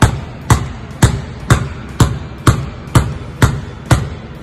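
A basketball pounded hard against the floor in steady, forceful dribbles, about two bounces a second, nine in all.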